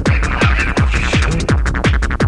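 Electronic dance music from a club DJ mix: a fast, steady kick drum, each beat dropping in pitch, under dense synth sounds.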